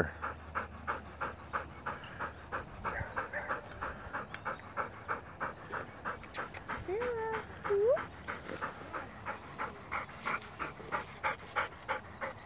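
A dog panting hard and fast, about four breaths a second, open-mouthed and winded from digging. A brief rising squeak stands out about seven seconds in.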